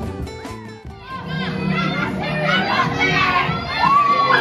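Background music for about the first second, then a cut to a hall full of children's voices chattering and shouting over one another.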